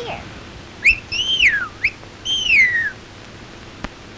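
A young girl whistling an imitation of the northern cardinal's song: two long clear whistles sliding down in pitch, each led in by a short quick note, in the cardinal's 'what-cheer, what-cheer' pattern.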